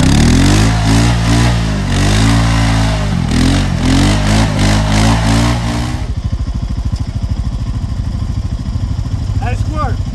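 ATV engine revving hard under load in low gear, pitch rising and falling, while towing a quad stuck in mud on a tow strap; about six seconds in it drops back to a lower idle.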